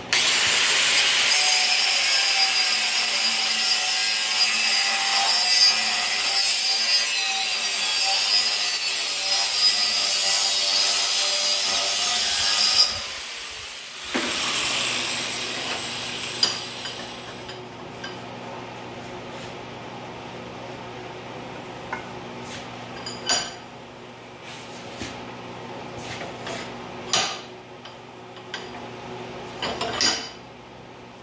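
Angle grinder with a cut-off wheel cutting through a steel tube clamped in a vise, a steady high whine and hiss for about thirteen seconds, then switched off and winding down. After that come a few sharp clanks as the vise is loosened and the tube shifted, over a steady hum from shop heaters.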